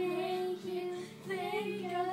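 A young girl singing karaoke over a backing track: a long held note with a wavering vibrato, a short break a little past halfway, then another held note.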